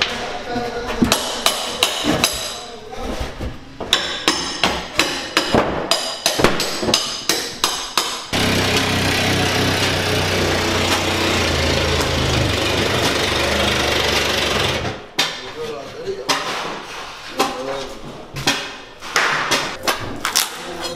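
Water-damaged drywall, cabinets and trim being torn out by hand with a pry bar: repeated knocks, cracks and crunching impacts. A steady loud machine noise takes over for about seven seconds in the middle, then the knocking resumes.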